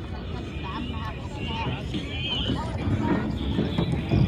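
Background talk of people nearby over a steady low outdoor rumble, with some knocks in the second half.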